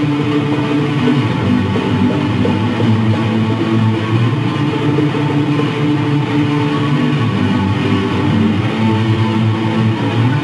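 Instrumental group jam led by guitar, with steady, sustained notes and no singing.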